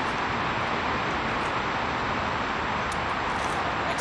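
Steady hum of distant city traffic, with a few faint ticks.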